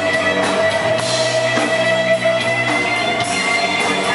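Punk rock band playing live: electric guitars and drum kit, with no vocals in this stretch.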